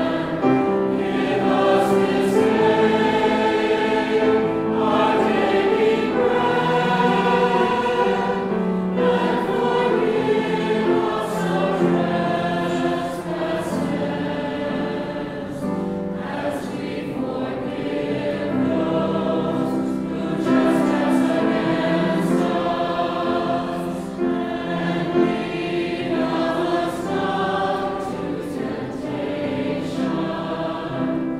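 Mixed choir of men and women singing a sacred Advent choral piece, with sustained notes and no break in the music.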